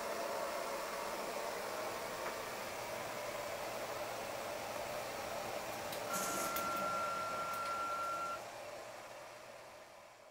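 Steady machine noise from a 5-axis 3D printer prototype. Past the middle, one steady high whine, typical of a stepper motor moving an axis, holds for about two seconds. It then fades out near the end.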